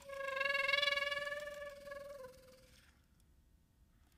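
Soprano saxophone holding one long note that swells and then fades away, with a slight drop in pitch just before it dies out, about two and a half seconds in.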